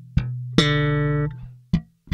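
Electric bass guitar played slap-and-pop style. A thumb slap about a sixth of a second in is followed by a bright popped note that rings for most of a second, then two short muted percussive hits near the end.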